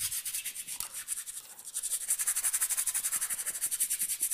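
Paintbrush scrubbing oil paint onto stretched canvas in quick, short back-and-forth strokes, a dry rhythmic scratching of many strokes a second that eases briefly midway.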